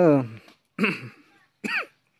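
A person's voice: a spoken phrase trails off, then two short separate vocal sounds follow about a second apart, the second one rising and falling in pitch.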